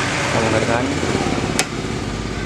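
Steady road-traffic noise from a busy main road, with a faint voice in it and one sharp click about a second and a half in.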